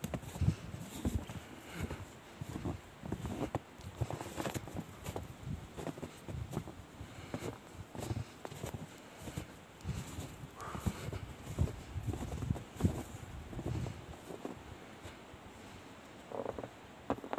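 Footsteps crunching in snow: soft, uneven thumps about one or two a second, with light crackles between them.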